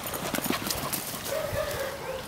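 Footfalls on bare dirt: a quick, uneven run of short thuds in the first second.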